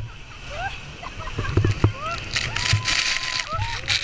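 Passengers on a tour speedboat shrieking and shouting in short rising calls, one held long, as the boat runs into the heavy spray of Iguazú Falls; the rush of falling water and spray on the boat swells loud about halfway through.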